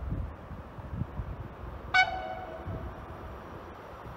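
Horn of an approaching locomotive giving one short toot about halfway through, its lowest note trailing off with a slight fall in pitch, over a low rumble.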